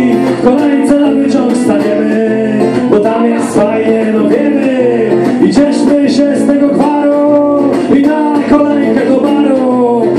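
A man singing a song, accompanied by his own acoustic guitar, played live.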